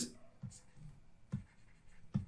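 Faint taps and light scratching of a stylus writing on a digital pen tablet, with a couple of small clicks.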